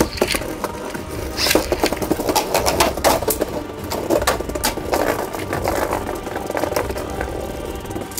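Plastic Beyblade spinning tops clattering in a plastic stadium: a steady run of quick knocks and rattles as the tops are handled, launched and spin against each other and the stadium.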